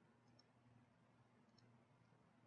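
Near silence: a faint low hum, with two faint computer mouse clicks about a second apart.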